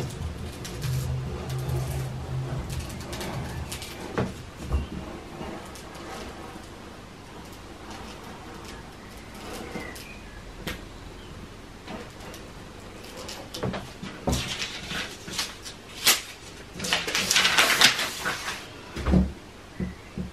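Rotary cutter slicing through paper pattern sheets laid on a cutting mat, with the paper crackling and rustling as it is moved. Scattered scrapes and clicks give way to dense crackly rustling in the last few seconds.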